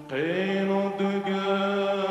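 A male singer holds one long sustained note in an Assyrian song, sliding up into it at the start, with instrumental accompaniment behind.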